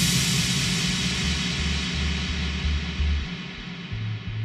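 Electro track in a sparse breakdown: a wash of high noise slowly fades out over a pulsing low bass line.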